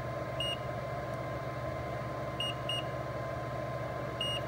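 Short, high beeps from a multimeter's continuity tester as the probes touch points around the PMIC on the phone board: one about half a second in, then two close together around two and a half seconds. The meter is checking for a short to ground, and no continuous tone sounds. A steady hum runs underneath.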